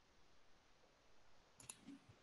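Near silence, with a few faint clicks close together near the end.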